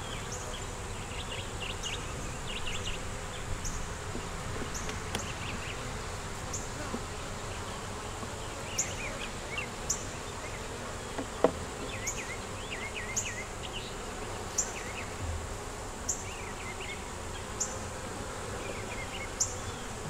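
Honeybees buzzing around an opened nuc hive: a steady hum of the colony and flying bees, with one sharp click near the middle.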